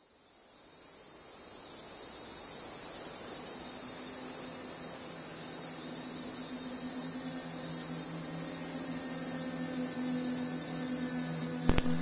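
Soundtrack sound design: a steady high hiss swells in over the first couple of seconds, joined about a third of the way in by low held drone tones, with a short cluster of sharp hits just before the end.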